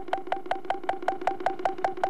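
Electronic theme music for a television news programme: a synthesizer pulse repeating about five times a second over a steady held tone.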